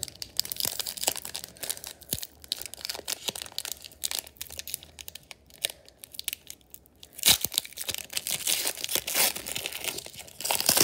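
The wrapper of a 2016-17 Upper Deck Series Two hockey card pack being torn open by hand, crinkling and tearing in irregular crackles. The loudest stretch of tearing and rustling comes about seven seconds in.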